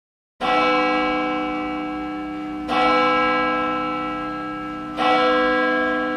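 A large bell tolling three times, about two and a half seconds apart, each stroke ringing on and slowly fading.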